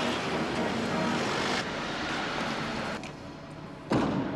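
City street traffic noise, a steady hiss of passing cars that drops away about three seconds in, then a sharp click near the end.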